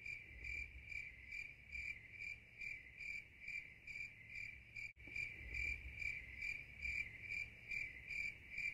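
Cricket-chirping sound effect: a faint, even chirp repeated about two and a half times a second, with a brief dropout about five seconds in. It is the cartoon gag for an awkward silence where nobody answers.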